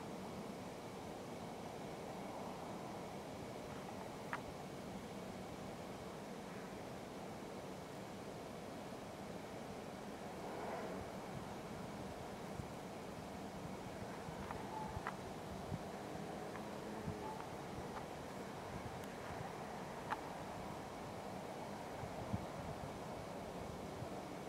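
Faint, steady outdoor background hum and hiss, with a few light clicks from the handheld camera being handled.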